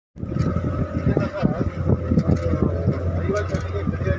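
Small motorboat's engine running with a steady low hum, with several people talking over it.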